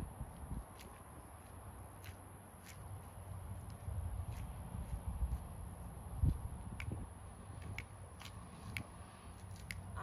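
Faint footsteps of a dancer hopping, stepping and shuffling on the ground through a line-dance routine, with a heavier thump about six seconds in. Scattered single sharp clicks fall through the routine.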